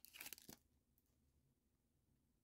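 Foil trading card pack wrapper crinkling briefly as it is torn open, for about half a second, then near silence.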